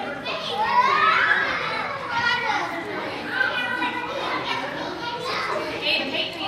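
Children's voices calling out and chattering while they play, high-pitched with cries that rise and fall in pitch.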